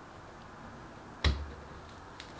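Metal scoop knocking once against a peach: a single sharp click with a low thud about a second in, over faint room tone.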